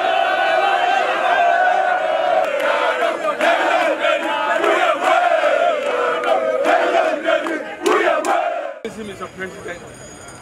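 A large crowd of many voices shouting and cheering together, loud and continuous, cutting off suddenly near the end.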